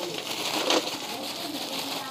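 Plastic bag crinkling as lumps of mustard oil cake are shaken out of it into a metal bucket, with one sharper knock about three-quarters of a second in. A pigeon coos faintly in the background.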